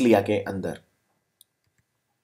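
A man's voice finishing a phrase, then silence broken by a single faint click about a second and a half in: a computer mouse click advancing the slide.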